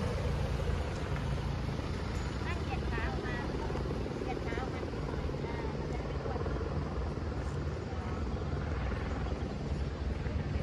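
A steady low mechanical drone, with faint voices in the background.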